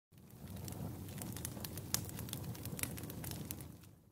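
Irregular crackling and rustling over a low rumble, starting suddenly and fading out near the end.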